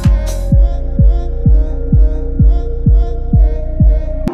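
Electronic house beat playing: a four-on-the-floor kick drum thumping about twice a second under sustained chords. The bright hi-hats and claps drop out about half a second in, leaving the kick and chords with only faint high ticks.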